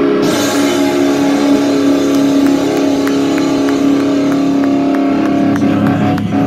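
Live heavy rock band holding one long sustained, distorted guitar chord, with drum and cymbal hits over it in the second half.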